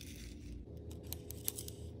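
Faint scraping with a few light ticks as a disc magnet is slid across a paper plate toward a pile of iron powder.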